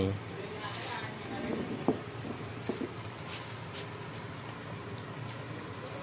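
Quiet workshop background with a few light, sharp clicks of metal being handled: the removed power steering pump being moved on the concrete floor.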